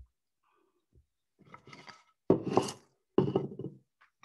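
Small hand gouge cutting the inside of a wooden bowl: a few faint scrapes, then two louder cuts about a second apart in the second half.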